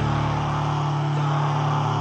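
Heavy metal song with a sustained distorted electric guitar chord ringing out between drum hits; the bass drops away about halfway through.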